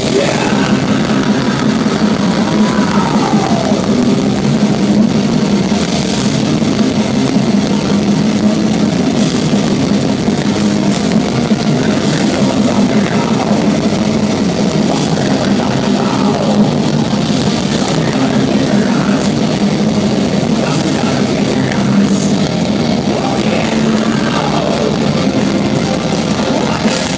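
Melodic death metal band playing live at full volume: distorted electric guitars, keyboards and drums, heard from the audience, with lead lines sliding down in pitch about two seconds in and again near the end.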